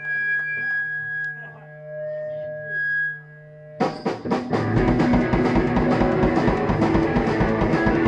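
Live rock band on stage: held electric-guitar tones and amp hum ring on their own, then about four seconds in the drums and guitars crash in together at a fast beat.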